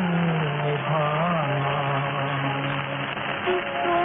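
Music from an old Hindi film song, thin and band-limited like an early recording, with long held low notes under a wavering melodic line.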